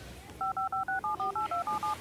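A touch-tone telephone keypad dialing a number: a quick run of about eleven short two-tone beeps, starting about half a second in.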